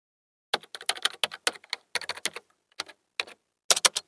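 Typing on a computer keyboard: quick keystrokes in uneven clusters, starting about half a second in and stopping just before the end.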